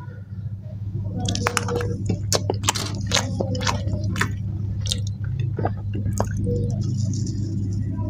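Close-miked eating of mutton and rice: wet, squishy chewing with a rapid string of short clicks and crackles from the mouth and food, over a steady low electrical hum.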